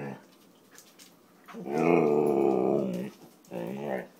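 Siberian husky 'talking': one long, wavering, howl-like grumble starting about a second and a half in, then a shorter one near the end, vocalising to beg for dinner.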